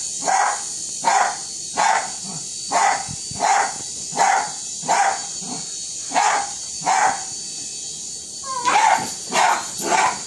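Small terrier barking at a hovering drone, about one and a half sharp barks a second in a steady run, breaking off for about a second near the end and then starting again. A steady high whine, from the drone's rotors, runs underneath.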